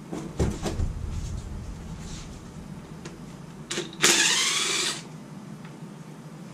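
Cordless brushless impact wrench with a 3/8-inch drive, backing out an oil pan bolt on a Jeep 4.0 inline-six. After a few short knocks near the start, it gives a brief burst, then runs loudly for about a second and stops sharply.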